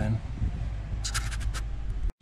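A short run of sharp, scratchy clicks lasting about half a second, starting about a second in, over a steady low rumble.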